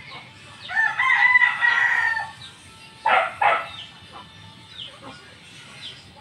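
A bird call: one long held note of about a second and a half, starting just before the first second. About three seconds in come two short, loud calls, and faint high chirps are scattered through the rest.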